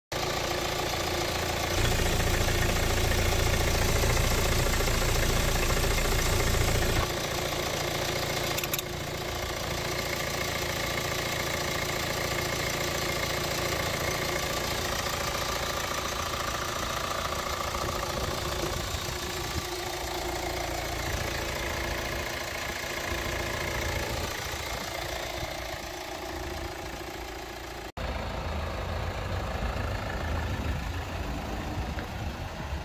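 2011 Hyundai Tucson ix engine idling steadily, heard close up in the open engine bay. For a few seconds near the start it is louder and deeper.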